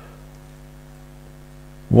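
Steady electrical mains hum, with a man's voice starting just before the end.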